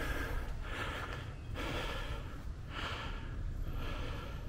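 A person breathing hard from the exertion of walking up a steep hill, with heavy breaths coming about once a second.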